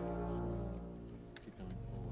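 Dark, low orchestral score with sustained string-like tones; a deeper bass tone swells in about one and a half seconds in.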